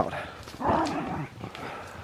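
A dog barking briefly, about half a second in.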